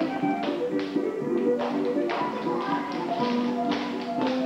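Recorded music playing, with irregular sharp taps of children's dance shoes striking a wooden floor over it.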